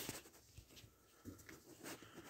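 Near silence, with a few faint, short scratchy rubs: a kitten pawing at a latex balloon on carpet.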